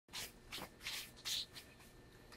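A few short, faint rustling and scuffing handling noises, about five in under two seconds.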